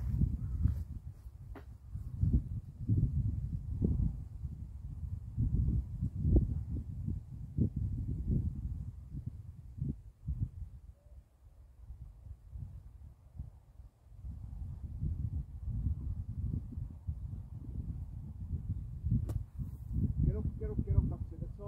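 Wind buffeting the microphone in a low, uneven rumble, then a single sharp strike near the end as a 60-degree wedge hits the ball out of the sand bunker.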